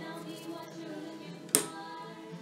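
A single sharp knock about one and a half seconds in, a perforated metal ESL stator panel being set down on a wooden workbench, over faint background radio music and voices.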